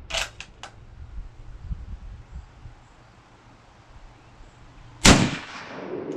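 A few sharp clicks in the first second, then a single loud rifle shot about five seconds in from a Lee-Enfield No. 4 Mk1 firing .303 British, ringing out and dying away over most of a second.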